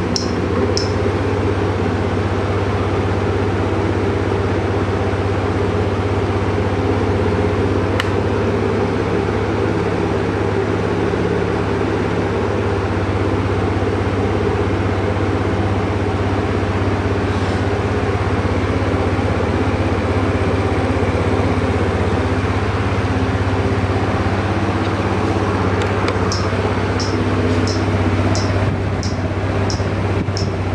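Suzuki Lets 5's fuel-injected 49cc engine idling steadily, a low even hum. Near the end a run of light ticks comes in, about two a second.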